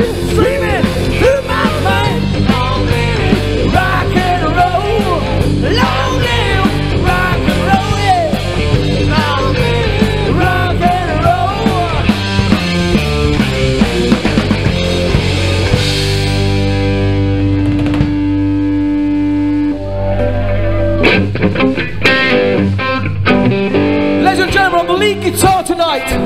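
Live rock band playing an instrumental passage: a lead electric guitar with bending notes over bass and drums. A long held chord follows, then gives way to scattered drum hits near the end.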